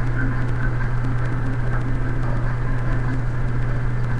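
A steady low hum under an even hiss of background noise, with no distinct events.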